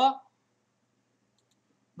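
A man's voice finishing a phrase, then near silence with a few faint clicks.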